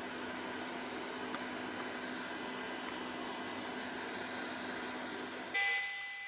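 Shop vacuum running steadily on a dust-collection hose at the drill press: an even hiss with a low hum. Near the end it gives way abruptly to a louder machine sound with a faint whine.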